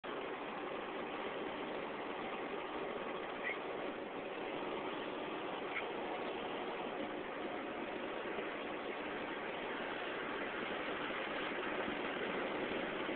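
Steady road and engine noise of a truck driving at highway speed, heard inside the cab. Two faint, brief chirps come through it about a third and halfway through.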